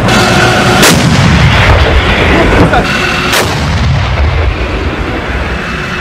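Heavy weapons fire: loud booming blasts over a continuous deep rumble, with two sharp cracks, one about a second in and one just past three seconds. The blasts fit a tank's main gun firing.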